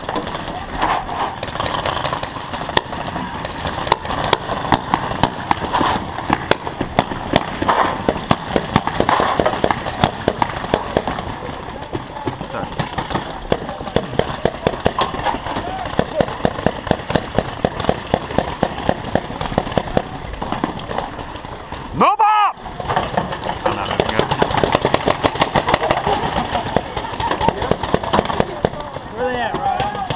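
Paintball markers firing, many sharp shots in rapid strings, with a close, steady run of shots a few seconds in the middle, over people shouting.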